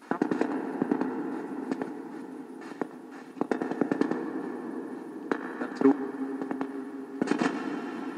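Ghost box (radio-sweep spirit box) running through a small speaker: a dense crackling static with rapid clicks as it sweeps through stations, starting abruptly and running steadily with a few sharper clicks.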